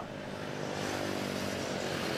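A steady engine drone over a haze of street traffic, growing slightly louder.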